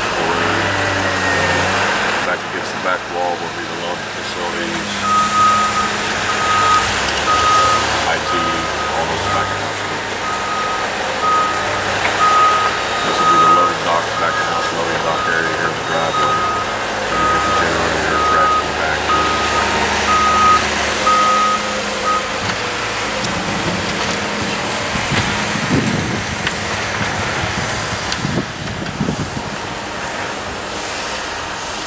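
A construction vehicle's reversing alarm beeps about once a second, starting about five seconds in and stopping after some seventeen seconds. A diesel engine runs steadily underneath.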